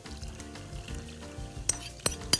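Soft background music with steady sustained notes, and a single light clink about three-quarters of the way through as a porcelain bowl knocks against a glass mixing bowl while dissolved yeast is poured into flour.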